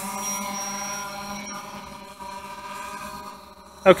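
DJI Phantom 4 quadcopter hovering close by, its propellers giving a steady, many-toned hum that fades as the drone moves away.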